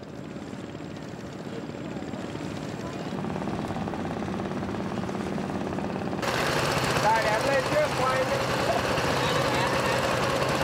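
Small river motorboat engines running with a fast, even chugging, growing louder over the first six seconds. About six seconds in the sound changes abruptly to a louder, closer engine, with brief voices over it.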